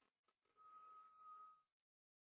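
Near silence: faint room tone, with a faint steady high tone for about a second in the middle.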